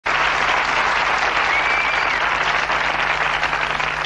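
Studio audience applauding steadily, the clapping easing slightly near the end.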